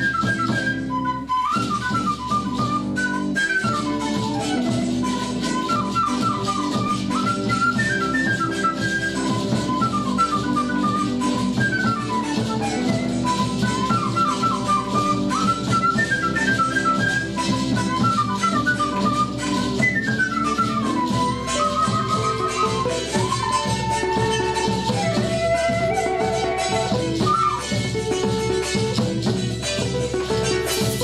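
Traditional Andean music played live by a small ensemble. An Andean flute carries a quick melody of runs and held notes over a steady accompaniment of strummed strings.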